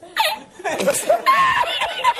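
A man laughing hard, in rapid high-pitched bursts that speed up in the second half.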